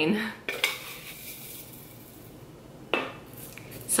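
Metal spoon clinking against metal tea tins while loose-leaf tea is scooped from one tin into another: a sharp clink about half a second in, a soft dry rustle of leaves, then a louder ringing clink near three seconds.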